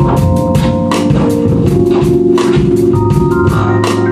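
Live jazz band playing an instrumental passage: an electric keyboard holds organ-like sustained chords, changing chord about halfway, over double bass and a drum kit with busy cymbal and drum strokes.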